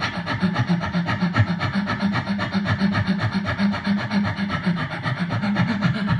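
Beatboxing into a handheld microphone: a fast, even rhythm built on breathing in and out through the mic, with a low pulse under the breathy strokes.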